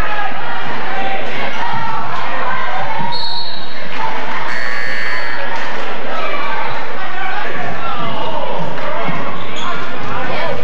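A basketball dribbled on a hardwood gym floor during play, under the voices of spectators. Two brief high-pitched squeals come about three and five seconds in.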